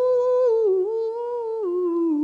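A voice humming a wordless melody, held notes stepping down in pitch over the two seconds.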